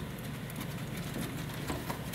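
Low steady hum with faint handling noise, and a couple of light clicks near the end as the loosened control board is handled.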